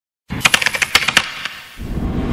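A rapid series of about ten sharp clicks lasting under a second, then a low rumbling swell that starts near the end.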